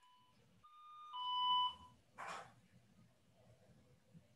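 Electronic two-note chime: a steady high tone stepping down to a slightly lower one, about half a second in, after the fading tail of an identical chime. A short, breathy burst of noise follows about two seconds in.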